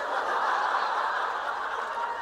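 Audience laughter filling a hall, swelling up in the first half second and then slowly tapering off.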